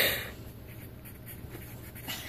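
Pen or pencil scratching on paper as a word is written in, over the low steady hum of a car cabin.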